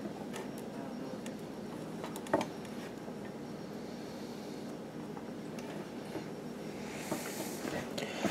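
Small clicks and taps of hands and a soldering iron working on a radio chassis, over a steady low hum, with one sharper click about two seconds in and a short hiss near the end.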